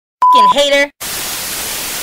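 Production-logo sting: a short steady beep together with a brief voice-like sound about a quarter second in, then loud, steady TV-static hiss from about a second in.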